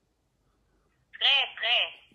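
Near silence, then about a second in a woman's voice says two short high-pitched words over a telephone line, thin and tinny through the phone's speaker.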